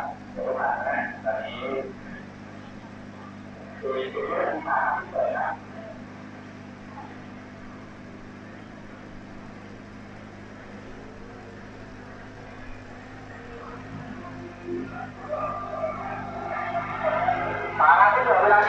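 Voices talking in short stretches at the start, a few seconds in and near the end, over a faint steady low mechanical hum like an engine running.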